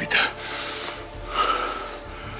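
A man's heavy, sobbing breaths while crying: one sharp intake at the start and another loud breath a little past the middle.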